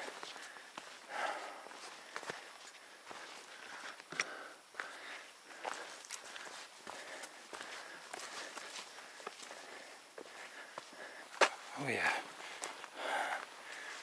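Footsteps of a hiker walking down a rocky dirt trail: irregular crunches and scuffs of boots on stone, grit and forest litter.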